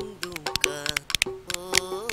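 A man sings a folk song to a two-headed barrel drum struck with a stick and hand, with sharp hand claps keeping time throughout.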